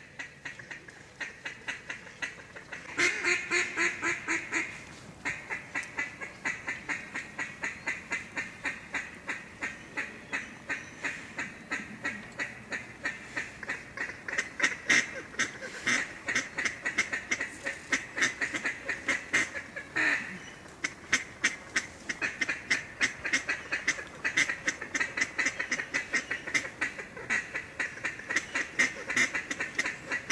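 Duck quacking in a long, rapid, continuous run of about four quacks a second, loudest a few seconds in.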